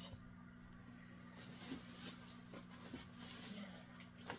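Near quiet: a steady low hum with faint rustling and a few light ticks as items are handled.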